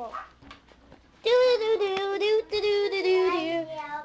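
A child singing in long, high held notes that step up and down, starting about a second in after a brief lull.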